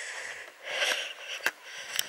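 A walker's breathing close to the microphone: two soft, hissy breaths, with two sharp clicks in between.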